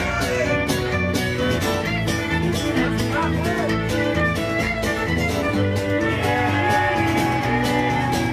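Live country band playing an instrumental break with no singing: an upright bass carries a steady rhythm under a sliding lead melody line.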